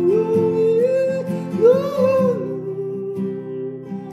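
Acoustic guitar played with a capo, accompanying one voice singing long held notes that slide up and fall back.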